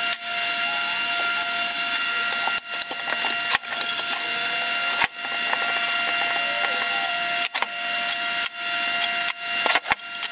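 Steady, loud noise of a running machine with a constant high whine through it, broken about half a dozen times by abrupt drops.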